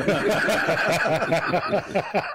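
Several men laughing together in a quick, steady run of chuckles.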